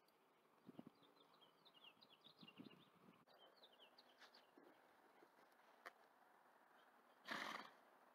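Faint sounds of a horse moving about a dirt pen: a few soft hoof steps between about one and three seconds in, faint high chirps behind them, and a short half-second rush of breathy noise near the end.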